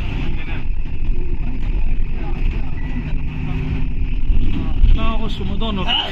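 Bus engine running, a steady low rumble heard from inside the passenger cabin, with passengers' voices over it toward the end.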